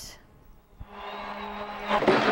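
Ice hockey game sound from the rink: crowd noise comes up about a second in, over a steady low hum.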